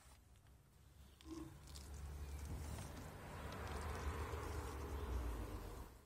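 Small Moerman Liquidator squeegee being drawn across soapy window glass: a wet rubbing swish with a low rumble underneath. It starts about a second in and stops just before the end.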